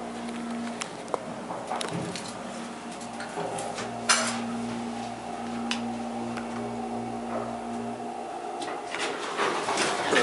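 Schindler hydraulic elevator's machinery humming steadily as the car runs, the hum stopping about eight seconds in, with scattered clicks and one louder metallic clank about four seconds in.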